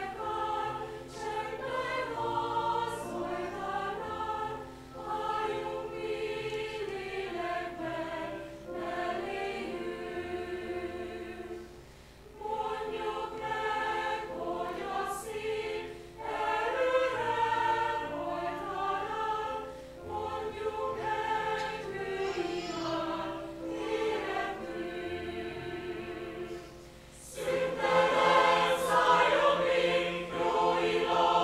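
Mixed choir of men and women singing together in phrases, with short pauses between them, growing louder near the end.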